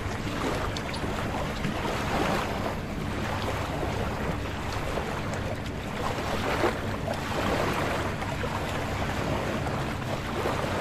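Outdoor ambience on the water: wind buffeting the microphone and the wash of waves, with a low, steady hum underneath.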